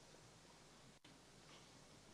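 Near silence: faint, steady room tone and hiss. The sound cuts out completely for an instant about a second in.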